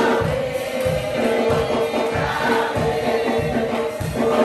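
A congregation singing a gospel chorus together over a steady low beat, about two to three strokes a second.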